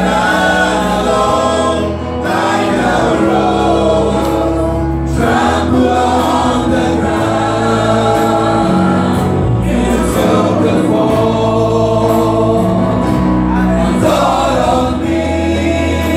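Live gospel worship song: a small group of singers on microphones singing together over held keyboard chords.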